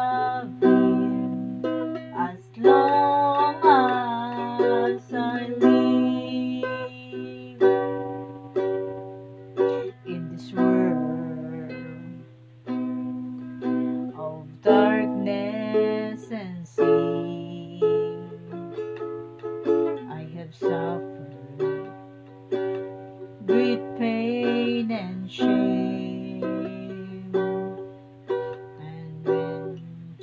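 Ukulele strummed and plucked in a steady rhythm, each chord dying away, with a woman's singing voice carrying the melody over it in places.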